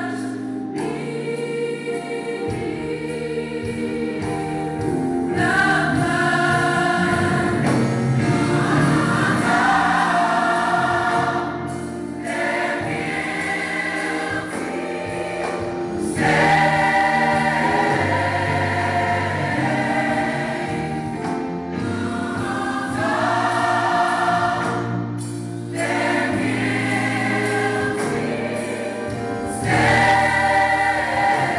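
Gospel choir music: many voices singing together over a steady low accompaniment, in phrases with short dips in level between them.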